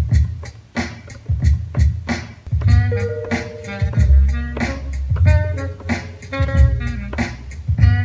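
Sampled hip-hop beat played on an Akai MPC2500 sampler: a drum break, joined about three seconds in by a sampled saxophone and bass line.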